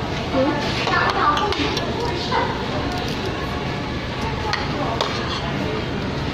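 Metal spoons and forks clinking a few times against plates and bowls during a meal, over steady restaurant background chatter.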